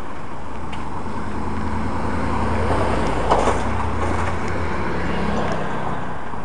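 Street traffic noise with a motor vehicle's engine hum that swells and then fades, loudest about halfway through.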